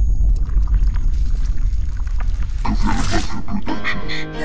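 Intro sound effect under a logo animation: a loud, deep rumble with scattered crackles, and a growl-like sound near the end.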